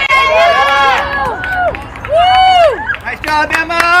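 Several spectators' voices shouting and cheering in long, rising-and-falling calls, overlapping one another, with a held shout near the end.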